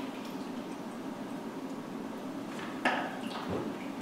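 Fixer remover draining out of an upturned film developing tank into a graduated cylinder in a steady stream. The pour stops a little under three seconds in, followed by a sharp click and a couple of light knocks as the tank is handled.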